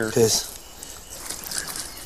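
A man's voice ends a word just as it opens, then quiet background with faint light rustling and handling noise.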